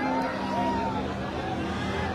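Crowd noise: many voices talking and calling at once over a steady low hum.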